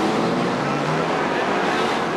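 A pack of early-1960s GT racing cars, Ferrari 250 GTOs among them, accelerating hard away from the start, many engines revving together as the field streaks past.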